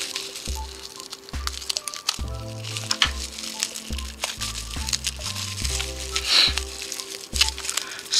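Plastic bubble wrap crinkling and crackling in short sharp bursts as a small watch part is unwrapped by hand, over background music with a steady, repeating bass line.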